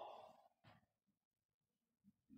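Near silence: room tone, with one faint short sound less than a second in.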